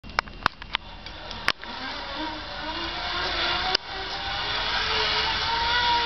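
Flying fox (zip-line) trolley running along its steel cable, a whirring whine that grows steadily louder and a little higher as it comes closer. A few sharp clicks in the first second and a half.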